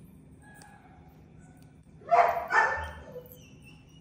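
A dog barking twice in quick succession, about two seconds in.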